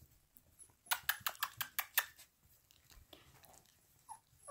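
A quick run of light clicks, about seven a second for a second, then a few fainter ticks: a young puppy's claws tapping on the whelping-pen floor as it toddles.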